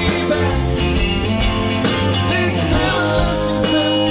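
Live rock band playing a song, with drums, electric and acoustic guitars and keyboards.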